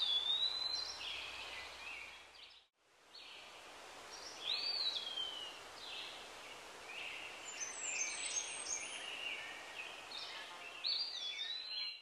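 Small birds chirping and whistling over faint outdoor background noise, in short repeated notes and falling slides. The sound drops out briefly about three seconds in, then the chirping carries on.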